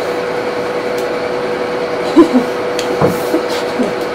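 Steady whooshing fan noise of a refrigerated cold room's air-handling unit, with a constant hum under it. A short voice sound about two seconds in and a light knock about a second later.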